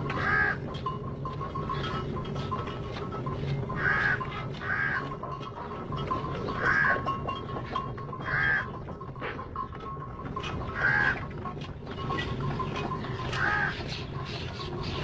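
Traditional desi water-powered flour mill (aata chakki) running: a steady low rumble with scattered clicks. About seven short, loud, harsh squawks come every couple of seconds.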